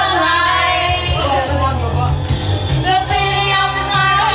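Music: singing with wavering held notes over an instrumental accompaniment with a steady low bass.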